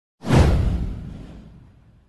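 Intro whoosh sound effect with a deep boom underneath, hitting suddenly about a quarter of a second in and fading away over about a second and a half.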